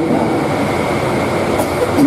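Steady, loud noise spread evenly across low and middle pitches, with a faint steady high tone, filling a pause in a man's amplified speech.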